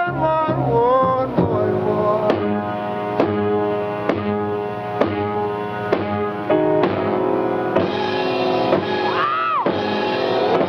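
Live slow soul ballad from a band with piano and drums, keeping a steady beat about once a second. Sliding melodic phrases come near the start and again near the end.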